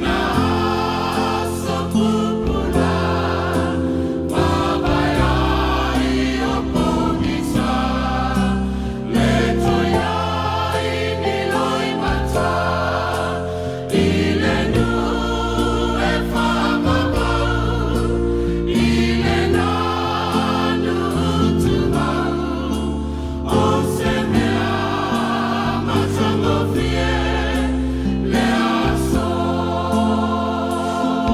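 A Samoan church choir singing a hymn in harmony, holding sustained chords that change every second or two in long phrases.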